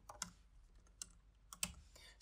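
A few faint, scattered keystrokes on a computer keyboard while a short line of code is typed and run.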